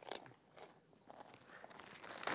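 Faint crunching of a white-tailed deer buck chewing carrots, a few soft, irregular crunches.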